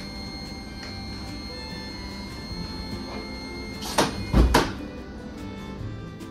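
Background music, with the sliding passenger door of a Tågab X10 commuter train closing about four seconds in: two loud knocks about half a second apart, the second with a heavy thump.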